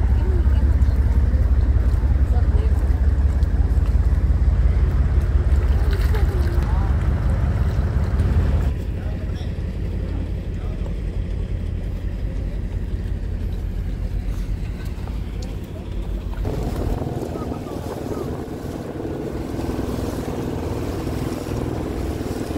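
Outdoor ambience that changes at two cuts: a heavy low rumble, like wind on the microphone, with faint voices; then, about nine seconds in, a lighter steady noise; and from about sixteen seconds a steady low hum of a boat engine running.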